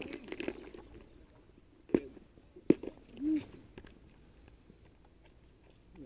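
Tackle being handled over an open plastic tackle box: two sharp plastic clicks about three-quarters of a second apart, with faint rustling and a brief voice sound after the second click.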